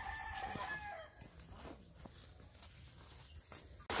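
A rooster crowing once: a held call that falls in pitch and ends about a second in, followed by faint background. Right at the end, the steady rush of a shallow stream over rocks cuts in.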